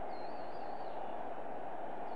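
Steady crowd noise in a cricket stadium just after a six, with a thin, wavering high whistle rising over it for about a second near the start.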